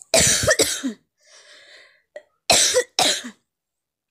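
A person coughing: two double coughs, about two seconds apart.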